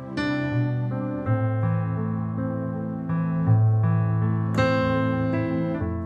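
Slow, sustained piano chords played on an electronic keyboard, opening on a C chord and moving to an F major seventh. A new chord or bass note comes in every one to two seconds and rings over a held bass.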